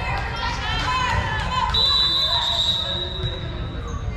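Voices of players and spectators, then, a little under halfway in, a referee's whistle sounds one long, steady, high-pitched blast lasting about two seconds.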